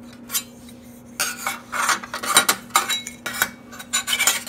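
Aluminium Z-mounting brackets clinking and scraping against each other and against the solar panel's aluminium frame as they are handled: a string of light, irregular metal knocks, most of them from about a second in.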